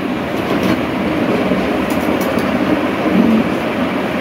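Steady rushing noise of an electric room fan running, with a few faint clinks of plates about two seconds in.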